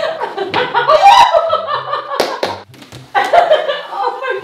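A woman laughing loudly in delighted surprise, in two long bouts with a short break about two and a half seconds in.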